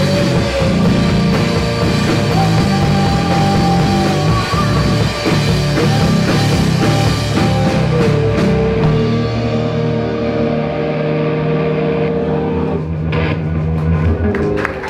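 Live rock band playing loud, with distorted electric guitars, drums and a singer. A little past halfway the drums and cymbals drop away and the guitars hold a ringing chord as the song winds down.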